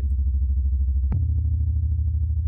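Synthesized kick drum from the Sugar Bytes DrumComputer plugin, its resonator's resonance turned up so the kick booms long and low like an 808. It is hit twice, about a second apart, each hit a sharp click followed by a deep, sustained tone.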